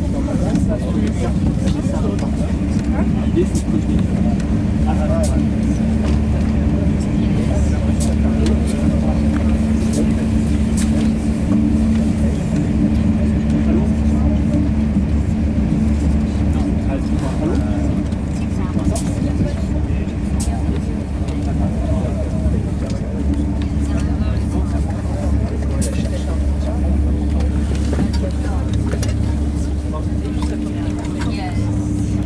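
Thalys TGV high-speed train running, heard inside a passenger car: a steady low rumble with a constant hum and occasional faint clicks.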